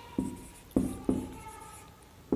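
Marker pen writing on a whiteboard: three sharp strokes in the first half, with a thin squeak of the marker tip against the board.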